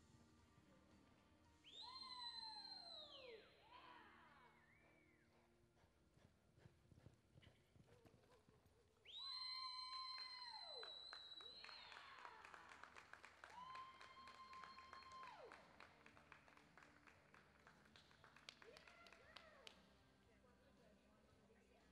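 Shrill whistles from the arena crowd: several sliding downward in pitch, one held for about two seconds before dropping off, and a short one near the end.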